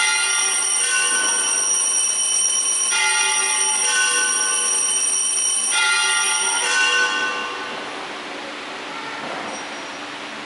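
Altar bells ringing in several shaken peals at the elevation of the chalice during the consecration, a bright high ringing that dies away about seven seconds in.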